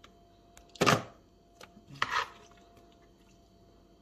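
Metal spoon scooping thick pakora batter in a steel pot: two short scraping sounds, the louder about a second in and a weaker one a second later, with a few small clicks.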